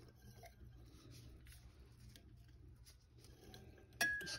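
Near silence: room tone with a faint low hum and a few faint light clicks.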